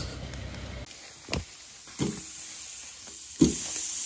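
Charcoal burning in a chimney starter, with a couple of sharp pops. Then, about three and a half seconds in, a sudden steady sizzle begins as food goes onto the hot charcoal grill grate.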